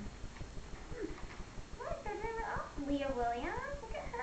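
A woman's voice in short, high, sliding utterances from about two seconds in, over a low steady hum.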